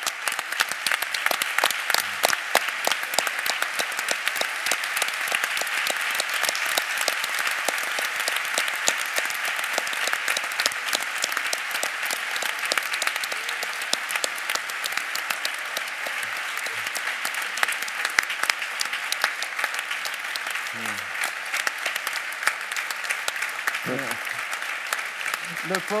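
A large audience applauding in a hall: a long, dense, sustained round of clapping that eases slightly toward the end, with a few voices faintly heard under it late on.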